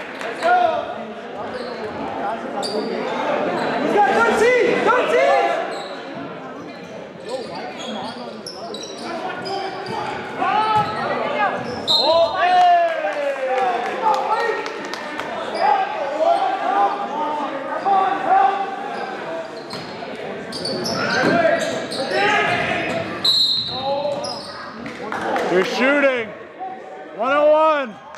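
A basketball being dribbled and bounced on a gym floor during live play, with players' shouts and crowd voices echoing in a large gymnasium.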